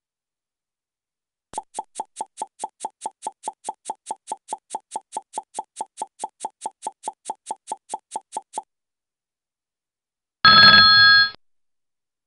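A countdown-timer sound effect: a quick, even ticking of about five ticks a second for some seven seconds, then a short, bright ring near the end, marking the time to answer running out.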